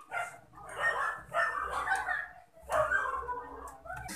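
A dog barking several times in the background, the barks coming in separate short bursts under a second apart.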